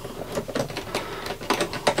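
Irregular small clicks and scrapes of hands working a resistor's wire leads into a lamp fitting's terminals.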